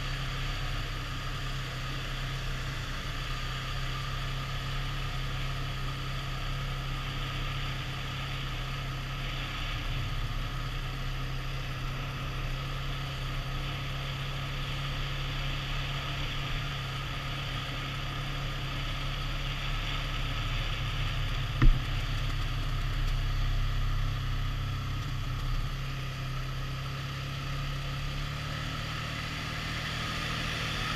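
A vehicle's engine running steadily while it drives along the road, with a constant low drone and road noise. A single sharp click comes about two-thirds of the way through.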